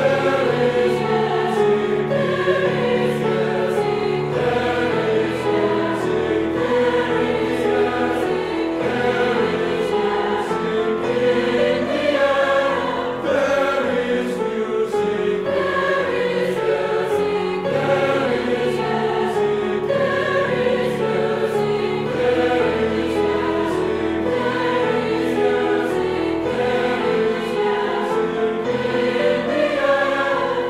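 Large mixed choir of men's and women's voices singing in parts, accompanied by a grand piano.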